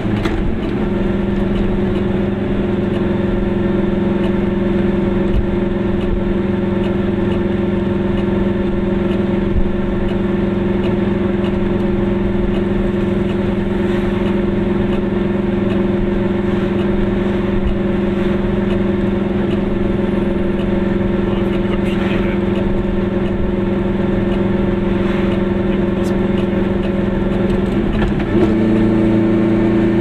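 Car engine and road noise, heard from inside the cabin while driving at a steady speed, as a constant drone. The pitch of the drone shifts briefly just after the start and again near the end.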